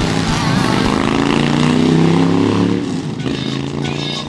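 Motorcycle engine running up through the revs, holding, then dying away after about three seconds. Music with a beat comes in near the end.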